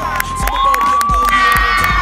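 High-pitched cheering and shouting, with one long held shout starting about half a second in, over a music track with a steady beat and bass.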